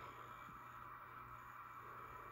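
Near silence: faint, steady room tone with a low hum.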